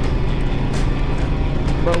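Motorcycle engine running steadily at cruising speed, with wind rushing over the microphone.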